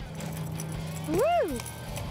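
A person cheers a single rising-and-falling "Woo!" while a freshly landed redfish flops and knocks on the fiberglass boat deck, over a steady low hum.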